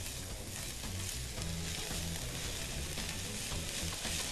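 Diced carrot, zucchini and onion sautéing in olive oil in an enamelled pan, a steady sizzle, while a silicone spatula stirs them through.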